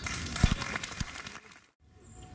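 A quick cluster of sharp clicks and knocks, the loudest about half a second in, then the sound drops out suddenly to near silence for a moment before the background returns.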